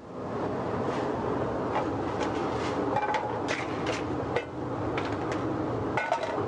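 Clams and mussels steaming in covered aluminium sauté pans on a stove: a steady hiss with scattered small clicks and clinks.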